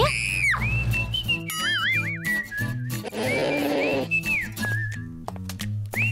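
Light background music with a steady bass line, overlaid by whistle-like cartoon sound effects: a quick rising whistle at the start, short arched whistle notes, and a wobbling whistle about a second and a half in.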